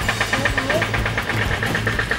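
An engine idling steadily with a rapid, even pulse, under faint voices.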